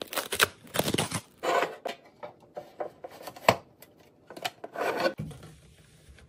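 Cardboard dryer-sheet box being torn open along its perforated tab: a run of irregular tearing and rasping crackles, with one sharp snap about three and a half seconds in.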